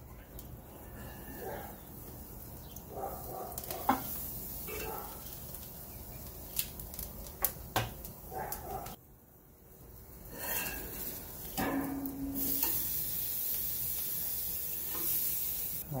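Tri-tip steak sizzling as it sears on the grill grate of a Big Green Egg over a very hot charcoal fire: the direct-heat final sear of a reverse sear, browning only the outside. A few sharp clicks of stainless tongs against the grate come through the sizzle.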